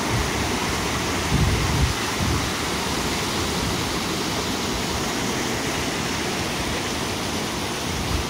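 Whitewater rushing steadily over boulders in a shallow rapid on a river running very low.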